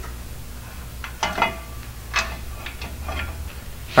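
A few light metallic clicks and ticks, about a second in and again near the middle, as a brake caliper bracket and its bolts are handled at the wheel hub, over a steady low hum.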